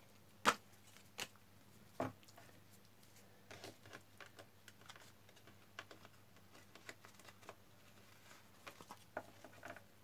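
Tarot cards being handled and shuffled by hand over a wooden tabletop: a few sharp taps in the first two seconds, then soft, faint clicks and flicks of the cards.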